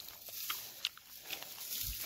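Faint rustling of dry pea vines being handled, with a few short, sharp crackles from the brittle stems and pods.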